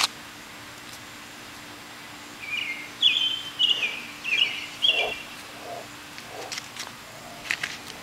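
A bird singing a quick run of about six short, high notes a few seconds in, over a faint steady hum.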